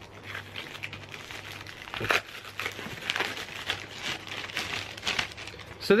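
Paper or plastic parcel packaging crinkling and rustling in irregular crackles as it is handled and opened to take out a book.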